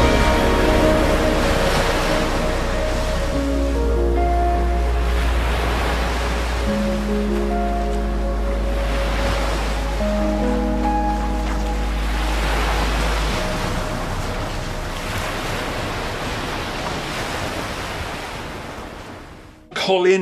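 Slow background music of long held notes over a low drone, mixed with the wash of sea waves that swell and fall every few seconds. Both fade out just before the end.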